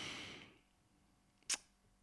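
A man breathes out audibly in a pause in his speech, then near silence broken by a single short click about one and a half seconds in.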